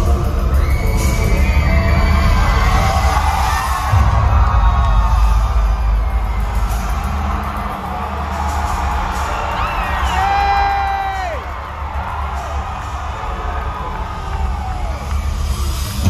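Live concert sound heard from within the audience: bass-heavy instrumental music from the PA with a crowd cheering and screaming over it. A heavy bass hit comes about four seconds in, and loud falling screams stand out about ten seconds in.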